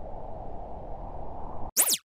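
Logo-animation sound effect. A low, noisy tail fades slowly, then near the end a short electronic sweep of crossing rising and falling tones follows a brief gap and stops abruptly.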